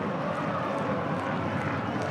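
Football stadium crowd making a steady din, with no single event standing out.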